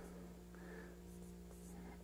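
Faint strokes of a dry-erase marker writing on a whiteboard, over a low steady hum.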